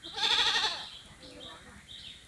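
A goat bleats once, a loud quavering call a little over half a second long near the start. Repeated high chirping runs behind it.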